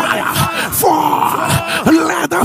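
A man's voice loudly intoning fervent prayer in drawn-out, gliding, groan-like vocal sounds.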